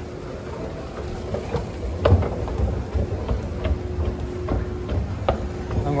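Footsteps and knocks on a handheld microphone as a person steps onto a running escalator, over a steady hum. The knocks and low rumble pick up about a second in.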